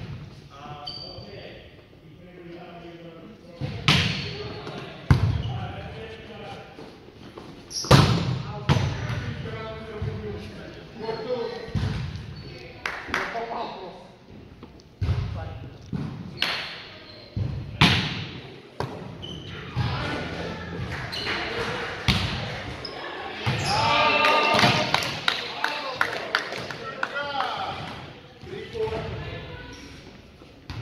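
A volleyball rally in a gymnasium: sharp slaps of a volleyball being hit and bouncing, each echoing through the large hall, with players' voices calling out between hits and a burst of louder shouting about three-quarters of the way through.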